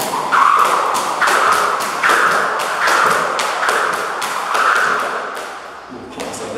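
Jump rope skipping: a speed rope slapping a rubber floor mat and feet landing, in a steady rhythm with a whoosh swelling on each turn.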